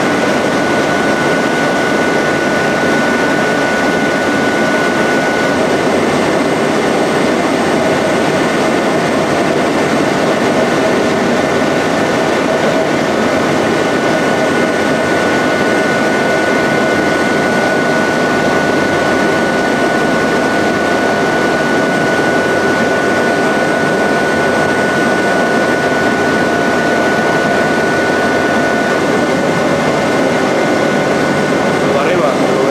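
Strecker paper sheeter running: a steady, loud mechanical noise with a constant high whine.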